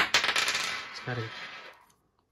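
A small metal clamp bolt dropped onto a tabletop: one sharp strike, then a rattling clatter as it bounces and rolls, dying away after about a second and a half.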